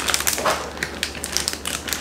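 Clear plastic snack bag crinkling and crackling as it is handled and a hand reaches inside, in many quick irregular crackles.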